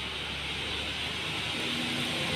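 A road vehicle approaching: a steady hiss that grows slowly louder, with a low engine hum joining about one and a half seconds in.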